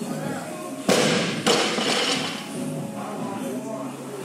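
Loaded barbell with rubber bumper plates dropped from overhead onto rubber gym flooring: two heavy thuds about half a second apart, about a second in.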